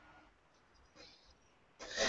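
Near silence: the call's audio is almost muted, with a man's voice starting up near the end.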